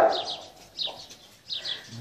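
Small birds chirping: a handful of short, falling chirps.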